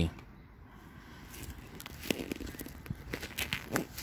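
A few scattered light knocks and scuffs of handling, with the camera being moved about and a short word near the end.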